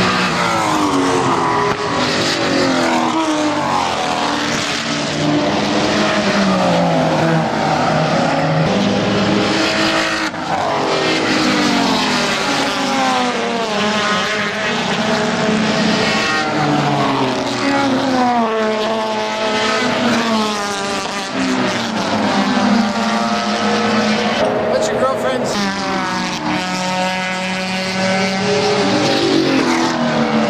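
Race cars passing one after another through a corner, their engine notes overlapping and sweeping up and down in pitch as each car comes by.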